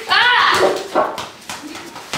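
A boy's short high-pitched yelp that rises and falls in pitch, followed by a couple of sharp knocks as thrown sports balls hit.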